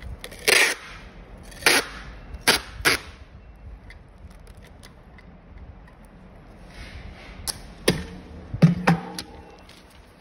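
Packing noises: a "FRAGILE" label being peeled and pressed onto a plastic bubble mailer, heard as sharp crackles and snaps. They come in two groups, one in the first three seconds and one near the end.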